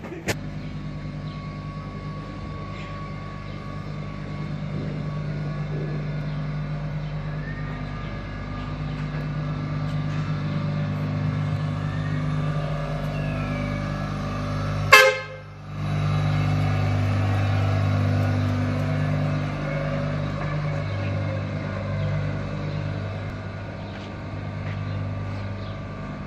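Street traffic with a steady low engine hum, broken by one short, loud vehicle-horn toot about halfway through.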